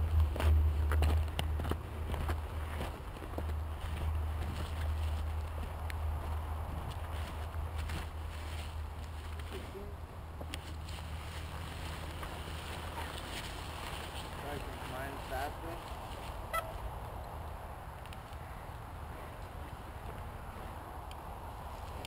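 Four-stroke ATV engine idling as a steady low hum that fades over the first ten seconds or so, with footsteps on gravel and grass.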